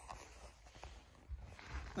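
Faint shuffling and rustling of a person moving through a crawl space, with a few soft, short knocks.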